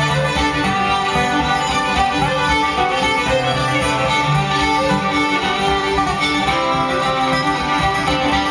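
Live instrumental folk tune: two fiddles playing the melody together over a steadily strummed acoustic guitar.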